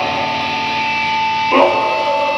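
Live black metal band in a break in the playing: one guitar note rings on as a steady, unbroken high tone. About one and a half seconds in comes a short screamed cry from the vocalist.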